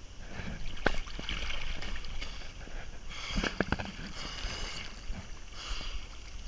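Water splashing and sloshing close to the microphone as a swimmer strokes through a river pool, with sharper splashes about a second in and again around three and a half seconds in.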